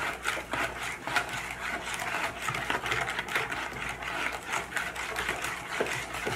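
A utensil beating eggs, sugar and melted butter by hand in a plastic mixing bowl: quick, even strokes that click and scrape against the bowl, stirring until the sugar dissolves.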